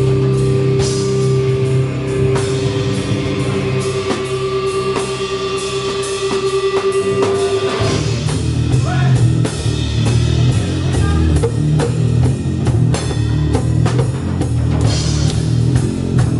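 Live heavy rock band with electric guitars and drum kit: a long held note over cymbal hits, then about eight seconds in the full band comes in with a low, heavy riff.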